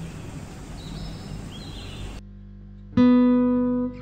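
Steady low background noise, then closing music starts about three seconds in: a single guitar chord struck and left ringing, slowly fading.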